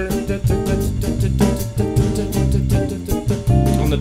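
Medium-tempo samba-feel backing track: bass in a surdo-like pattern, drum kit, and a ganzá shaker pattern on top, playing continuously.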